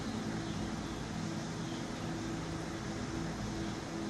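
Steady background hum and hiss of a hall's room noise, with a faint low steady drone, as from air conditioning or the sound system.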